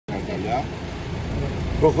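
Steady low engine rumble of heavy machinery and traffic under faint voices, with a man starting to speak near the end.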